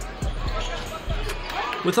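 A basketball bouncing a few times on a hardwood gym floor, heard as game sound from a high-school basketball game, over gym ambience.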